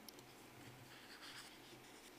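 Near silence with faint rustling of paper sheets being handled, and a few light clicks near the start.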